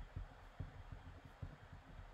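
Pen writing on a sheet of paper on a desk, its strokes coming through faintly as soft, irregular low thumps, a few per second.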